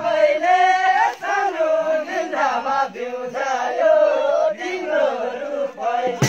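A group of male voices chanting together, the pitch rising and falling in short broken phrases.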